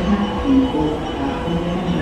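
A 681/683-series electric limited express train approaching along the platform, heard as a low rumble, with a tune of held notes changing every few tenths of a second playing over it.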